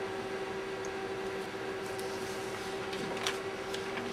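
Plastic shrink-sleeve film handled on a cutting mat: a few faint crinkles and light ticks, the clearest a little after three seconds, over a steady electrical hum.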